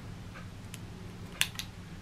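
A few faint clicks and taps as a plastic ring light and its dangling cord are lifted and handled, the sharpest pair about one and a half seconds in, over a low steady hum.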